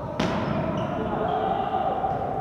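A volleyball spike at the net: one sharp smack of hand on ball about a fifth of a second in, ringing through the sports hall, with voices calling out after it.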